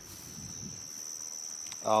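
Insects singing outdoors in a steady, unbroken high-pitched drone, with a brief spoken "um" near the end.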